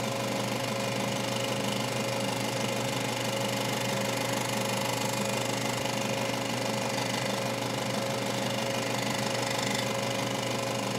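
A steady machine-like drone with a fast, even mechanical rhythm over a constant hum, running without a break.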